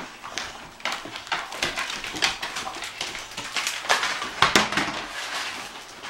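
Dogs tearing and chewing at Christmas wrapping paper and plastic packaging: irregular crinkling and rustling.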